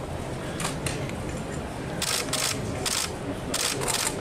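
Camera shutters clicking as press photographers shoot: a few clicks about half a second in, then a quick run of rapid clicks through the second half, over a low murmur of room chatter.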